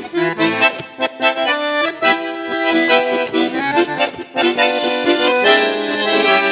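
Bandoneon and accordion playing tango together, in short detached chords for the first two seconds and then in longer held chords.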